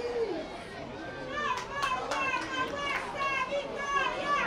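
Children shouting and calling out in high voices: a run of short, quick calls from about a second in, over a murmur of other voices.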